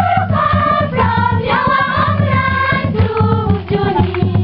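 Choir singing, several voices in a melody over a steady low beat.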